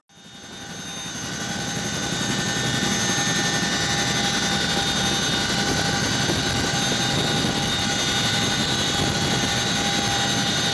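CH-47 Chinook twin-rotor helicopter hovering with a sling load on its cargo hook, heard from inside the cabin: steady rotor and turbine engine noise with high whining tones. It fades in over the first two seconds or so.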